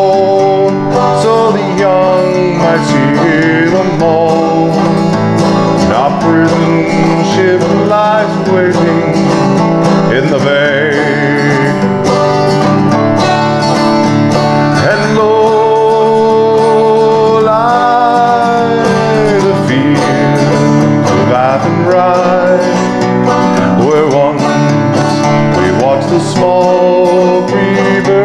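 A five-string banjo played frailing (clawhammer) style in open G tuning in the key of D, with an acoustic guitar strumming along and a man singing a slow Irish ballad over them.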